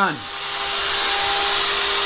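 Portable jobsite table saw running, a steady whirring noise with a constant hum that grows louder over the first second and then holds.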